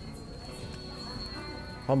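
Quiet background music with a steady high-pitched whine, before a man's voice starts again right at the end.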